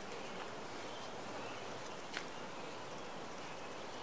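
Steady, fairly quiet outdoor background hiss of a backyard garden, with one small click a little after two seconds in.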